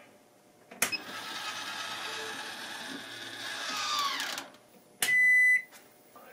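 Circuit breakers in an RV's power panel being switched on. A click about a second in is followed by a whirring hum with several high tones, which slides down in pitch and dies away after a few seconds. A second click about five seconds in sets off a loud half-second electronic beep, the loudest sound here.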